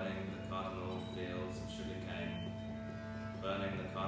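A folk drone: a wooden reed organ holds steady notes under a bowed cello, while a voice chants words in short phrases over them.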